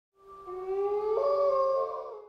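Wolf howl sound effect: one long howl that rises in pitch, stepping up about a second in.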